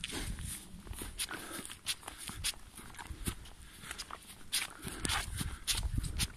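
Footsteps through dry leaf litter and twigs under a thin layer of snow, coming in irregular, sharp crackling steps.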